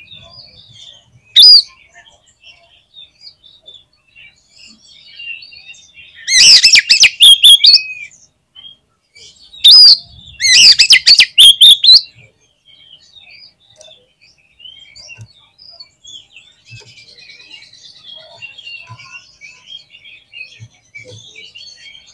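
Oriental magpie-robin (kacer) singing in loud bursts of rapid, varied whistles and chattering notes. A short phrase comes about a second and a half in, then two longer phrases of about two seconds each around the middle. Faint chirping carries on between and after them.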